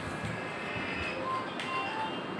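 Pan-tilt Wi-Fi security camera's motor running as the camera head pans, giving short steady whining tones at a few different pitches.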